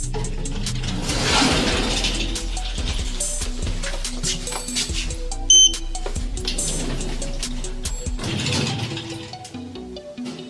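Podcast intro soundscape: music laced with many sharp clicks and two swelling hisses, and a short, loud high beep about five and a half seconds in.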